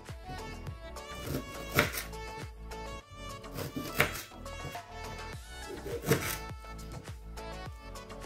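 Kitchen knife cutting ginger on a bamboo cutting board: three sharp chops about two seconds apart, the loudest sounds here, over steady background music.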